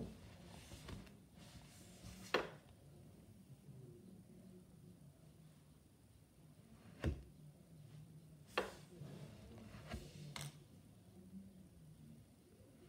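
A plastic knife cutting through a block of kinetic sand: mostly quiet, with about six short, sharp taps spread through as the knife works.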